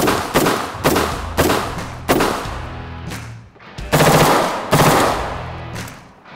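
Daniel Defense MK18 short-barreled 5.56 rifle firing a string of shots. About five come roughly half a second apart in the first two seconds, then after a pause two more loud reports around four and five seconds in.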